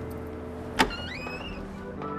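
A car door latch clicking open about a second in, over a steady low hum.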